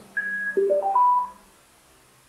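Power-on chime of a digital LED alarm clock being switched on: a short high beep, then a quick rising run of four notes.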